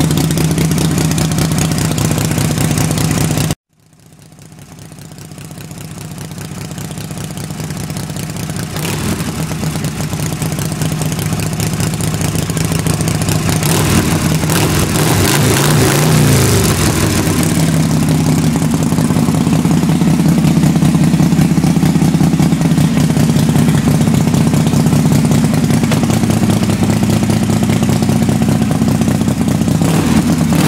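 1966 Harley-Davidson Panshovel's V-twin engine running steadily. A few seconds in the sound cuts out abruptly and fades back up over several seconds. Around the middle the engine revs up and down.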